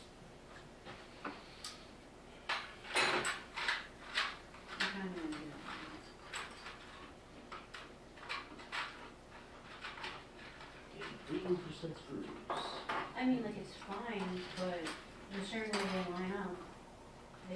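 Irregular knocks, clicks and clatter of objects being handled and rummaged through in a box on a table, with a denser clatter about three seconds in. Quiet voices talk in the background, mostly in the second half.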